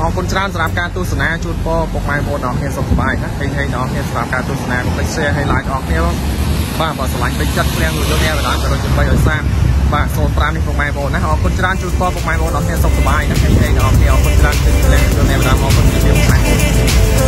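Continuous talking, with a steady low rumble underneath that grows louder about six seconds in.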